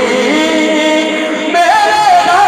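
Devotional naat sung without instruments: voices holding long, ornamented, gliding notes, with a higher line coming in about one and a half seconds in.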